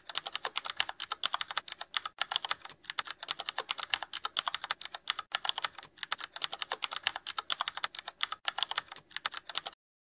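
Rapid typing on a computer keyboard: a fast, continuous run of key clicks that stops shortly before the end.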